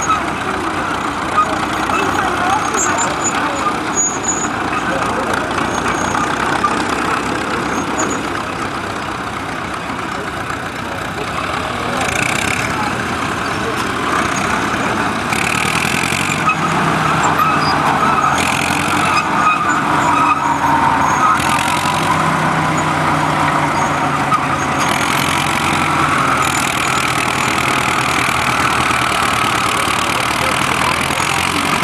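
Engines of a vintage crawler tractor with a dozer blade and a wheel loader running as they work the soil, a steady mechanical din with a low engine hum rising in about halfway through. Crowd chatter runs underneath.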